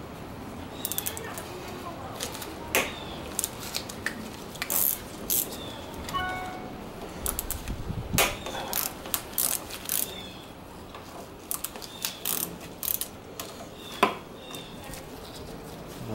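A ratchet wrench clicking in short, irregular runs, with small metallic clicks and taps, as the clamp bolt of the motorcycle's brake master cylinder is loosened on the handlebar. A brief ringing squeak sounds about six seconds in.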